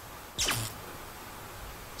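A single short creak, falling quickly in pitch, about half a second in, which the investigators take for a footstep on wooden boards.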